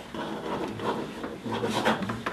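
Pen scratching and paper rubbing on a tabletop as notes are written, with a faint low voice near the end.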